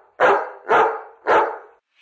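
A dog barking three times in quick succession, about half a second apart.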